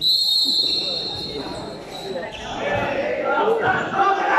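A referee's whistle blown once in a large sports hall: a loud, steady, shrill blast lasting about a second and a half, followed by players' and spectators' voices echoing in the hall.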